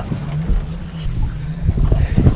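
Spinning reel being wound against a hooked fish, over the steady low drone of the motorboat's engine running and wind noise, with a few knocks near the end.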